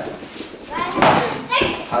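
A strike from MMA sparring gloves landing with a sharp thud about a second in, followed by a smaller knock shortly after, among voices in the room.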